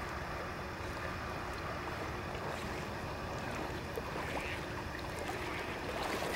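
Gentle river water swishing and lapping around a person wading through shallow water, over a steady low rush of outdoor air.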